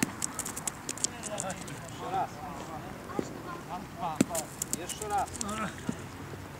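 Voices talking in the background, with a string of sharp clicks and crunches on a gravel pétanque court, clustered in the first second and again around four to five seconds in.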